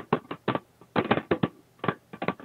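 Crackling on a video-conference audio line: a participant's phone or microphone breaking up into a string of short, uneven crackles, several in quick succession.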